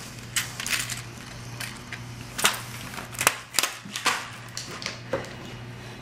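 Irregular light clicks and rattles of small plastic items being handled while a clear acrylic nail tip is picked out, the loudest a little past the middle, over a steady low hum.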